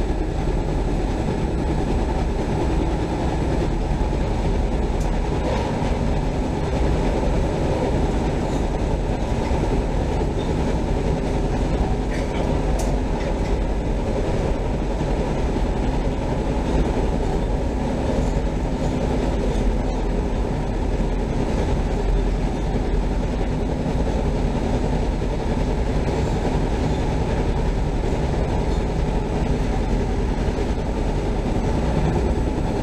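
Chicago CTA Orange Line rapid-transit train running along the track, heard from inside the car: a steady, low rumble of wheels on rail.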